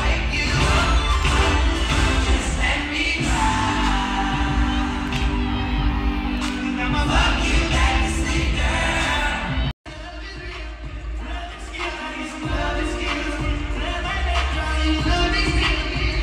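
Live concert music with a singer, heard from the seats of a large arena. About ten seconds in, the sound cuts out for a moment and a different song picks up.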